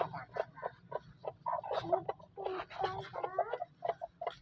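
Chickens clucking: a run of short, quick clucks, then longer, drawn-out clucking calls from about a second and a half in.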